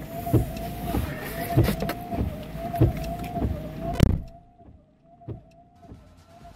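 Car running, heard from inside the cabin: a steady hum with a regular low tick about every 0.6 s. The sound drops away suddenly about four seconds in.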